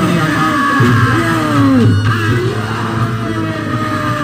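Live Reog Ponorogo gamelan music: a reedy melody line with sliding, falling pitches, typical of the slompret, over drums and a steady low gong tone.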